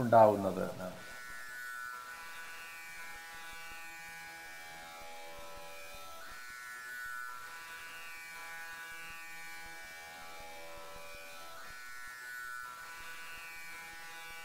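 A steady, buzzing drone of many even overtones, wavering slightly in pitch. A man's voice finishes a word at the very start.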